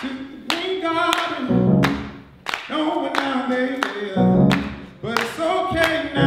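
A live band playing, with a male singer's voice over the music and sharp claps on the beat, about two a second.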